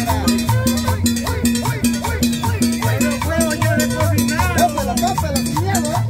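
Latin dance music from a live street band, with a steady beat, a repeating bass line and percussion.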